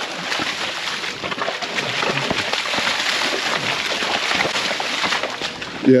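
Wet mud sloshing and squelching without a break, as boots tramp through a deep, waterlogged pen.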